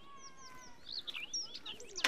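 Small birds chirping, a string of quick whistled calls that rise and fall in pitch, getting busier in the second second.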